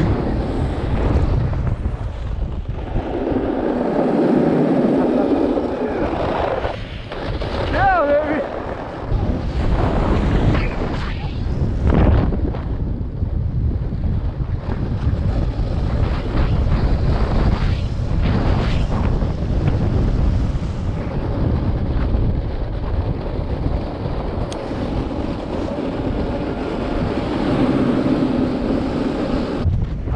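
Heavy wind buffeting a moving camera microphone, mixed with the scrape of a snowboard edge carving across firm, wind-packed snow. The scraping rush swells for a few seconds about three seconds in and again near the end.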